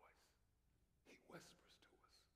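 A man whispering faintly, one short phrase about a second in, otherwise near silence.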